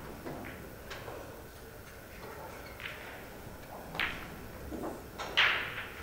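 Pool shot on a pocket billiards table: sharp clicks of the cue tip and hard balls striking each other, the loudest clack about five and a half seconds in.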